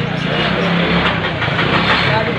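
Busy street-market bustle: many people talking over one another, with no single voice clear, over a steady engine hum.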